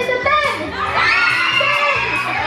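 A crowd of children shouting and cheering together, with a loud rising shout swelling from about half a second in.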